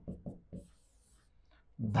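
A marker writing on a board: a few short strokes, then one longer, faint, high-pitched stroke about a second long.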